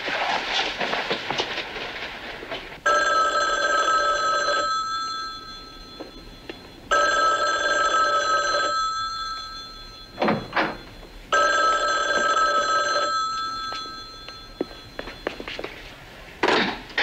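A desk telephone ringing three times, each ring about two seconds long and coming roughly every four seconds: an unanswered call.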